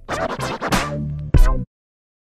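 Short TV channel ident jingle with scratch-like effects, ending on a final hit and cutting off suddenly about a second and a half in.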